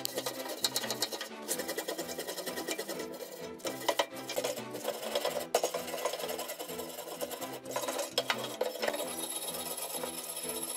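A flat metal blade scraping rapidly back and forth along a rusty steel wheelbarrow handle tube, a fast, uneven run of rasping strokes.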